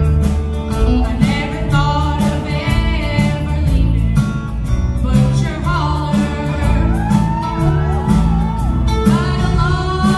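A young girl sings a melody into a microphone, backed by a live band on electric bass guitar and drums.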